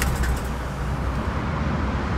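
Zenos E10 S's 2.0-litre Ford EcoBoost turbocharged four-cylinder engine switched off from idle with the start/stop button: its running sound cuts at the start and dies away, leaving a low steady rumble.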